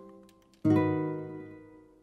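Sampled nylon-string classical guitar chords in E minor: a ringing chord dies away, then a new chord is plucked about half a second in and rings out, slowly fading.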